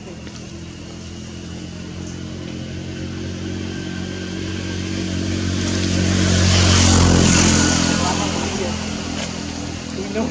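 A motor vehicle driving past, its engine sound growing steadily louder to a peak about seven seconds in, then fading away.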